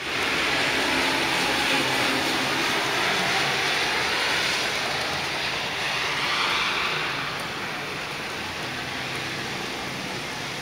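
Heavy rain pouring down with a steady, dense hiss, a little softer over the last few seconds.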